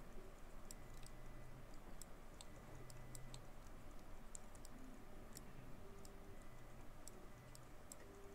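Faint, irregular clicking of a computer mouse and keyboard.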